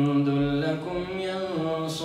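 A man's voice reciting the Qur'an in a melodic, drawn-out chant. He holds a long note, then steps it up in pitch about one and a half seconds in.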